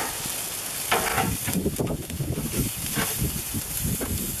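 Hamburger patties sizzling on a grill, a steady hiss, with a few light clicks and scrapes of a metal spatula and fork shifting them around on the grill mat.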